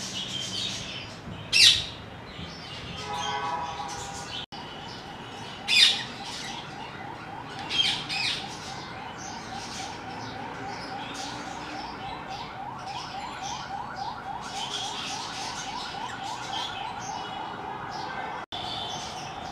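Birds in an aviary calling: constant high chirping broken by loud shrill squawks about a second and a half in, around six seconds and again around eight seconds, with a fast, steady repeated trill running through the second half.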